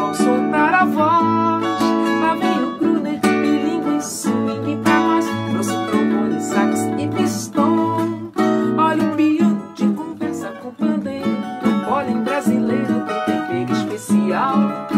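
Cavaquinho and acoustic guitar playing a choro together, plucked melody and chords.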